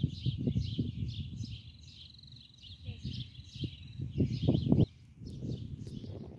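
Birds chirping over and over, with a steady high trill for a few seconds in the middle. Uneven low rumbling runs underneath, loudest shortly before the end.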